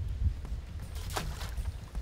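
A hoop net landing on the water with one short splash about a second in, over a low rumble of wind on the microphone.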